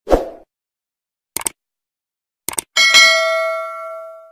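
Sound effects of an animated subscribe button: a soft thump, two sharp clicks about a second apart, then a bell ding that rings on and fades.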